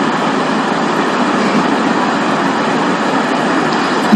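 Steady, even hiss-like noise with no voice or tones in it; it breaks off when speech resumes at the end.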